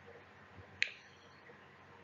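A single short, sharp click a little under a second in, over faint room tone.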